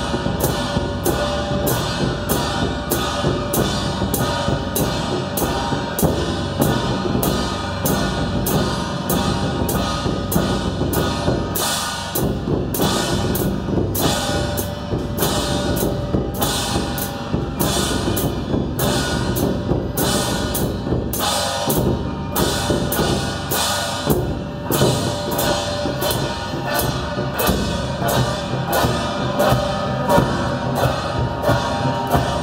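Traditional Taiwanese procession percussion band: hand-held bronze gongs and small cymbals struck together in a steady beat, about two strokes a second, with a drum beneath and the gongs ringing between strokes.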